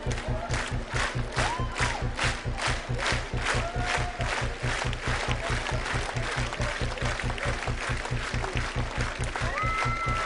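Concert crowd clapping in time, about three claps a second, over a steady kick-drum beat, with scattered shouts. The clapping thins out after the first few seconds, and a held keyboard-like note comes in just before the end as the song starts.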